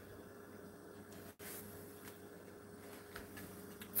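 Quiet kitchen room tone with a faint steady hum. There is a very brief dropout about one and a half seconds in, and a light tick a little after three seconds.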